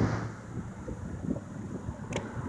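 Wind buffeting the microphone over the low rumble of road traffic. The rumble is loudest at the start and fades within the first half second, leaving an uneven, gusty low rumble.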